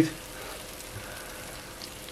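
Whole trout just out of the oven, still sizzling softly and steadily in the hot oil and juices of the baking dish.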